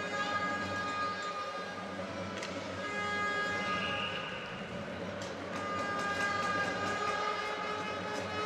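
Ice hockey arena sound: long held horn blasts in several pitches at once, sounded in three stretches over crowd noise, with scattered sharp clicks from the rink.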